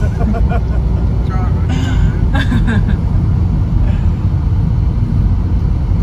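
Steady low rumble of road and engine noise inside a moving car's cabin, with brief snatches of quiet talk.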